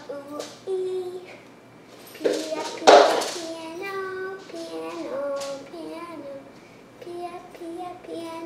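A young girl singing a wordless tune in held notes, with a loud breathy burst about three seconds in.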